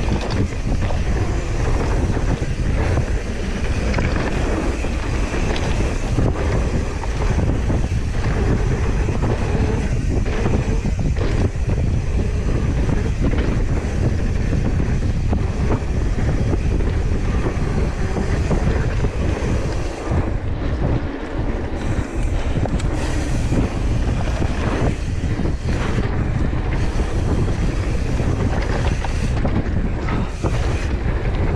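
Wind buffeting an action camera's microphone on a fast mountain-bike descent, with the steady rush of knobby tyres on a dirt trail and frequent knocks and rattles of the bike over bumps.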